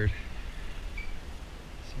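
A man's voice at the start and end, with only a low, even background noise between and no distinct sound of its own.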